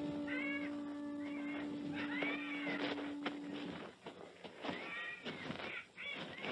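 Jungle sound effect of several meow-like animal calls, each about half a second long and rising then falling in pitch. Under the first half, a held low musical note lingers and ends a little before the midpoint.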